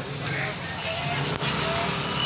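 Steady outdoor street noise, a hiss of traffic and a moving crowd, with scattered faint voices of people in the crowd.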